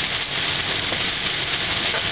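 Steady hiss of heavy rain on a moving car and its tyres on the flooded highway, heard from inside the cabin.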